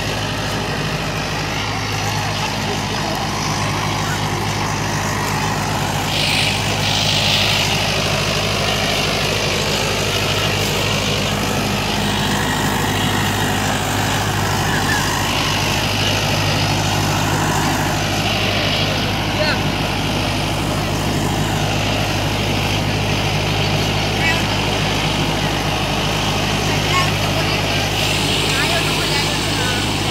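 Sonalika Tiger tractor's diesel engine running steadily while pulling a tine cultivator through tilled soil, with voices of onlookers in the background.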